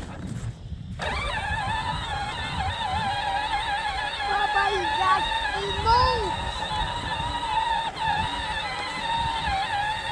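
Electric motors and gearbox of a John Deere Gator ride-on toy whining as it drives over grass. The pitch wavers with the load, cuts out briefly and picks up again about a second in.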